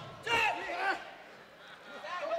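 A brief shouted voice in the first second, then a faint murmur of an arena crowd.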